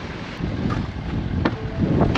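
Strong wind buffeting the microphone: a steady low rushing noise, with two short clicks in the second half.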